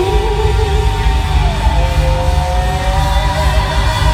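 Live amplified pop music in a large hall: long held sung or synth notes over a heavy, pulsing bass.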